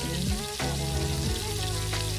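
Leftover fried rice and prawns sizzling in a pan as metal tongs turn them, with background music playing steady low notes throughout.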